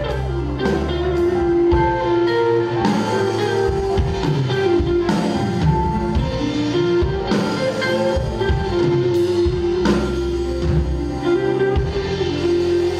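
Live band playing an instrumental passage: electric guitar over bass and drums, with occasional cymbal crashes.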